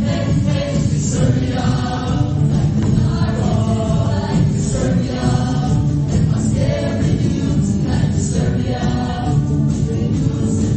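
Mixed show choir singing a choreographed number in harmony with instrumental accompaniment.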